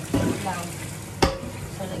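Kitchen tap running into a sink, with a clatter of handling just after the start and a sharp knock a little over a second in.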